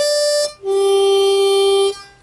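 Key-of-C diatonic blues harmonica: a short higher note, then a lower note held steady for over a second.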